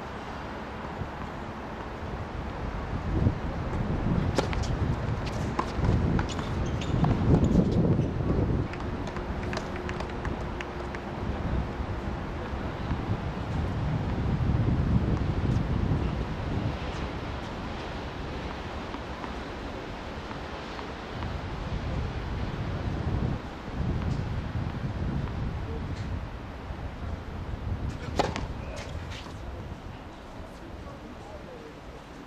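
Outdoor wind buffeting the microphone in gusts that swell and fade. A few sharp knocks from tennis balls come through, several in quick succession near the end.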